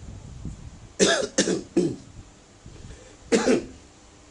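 A man coughing: three coughs in quick succession about a second in, then another near the end.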